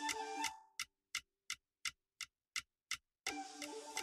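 Hip-hop beat with a clock-tick sound in its rhythm. The music drops out about half a second in, leaving only the clock ticking, nearly three ticks a second. The beat comes back near the end.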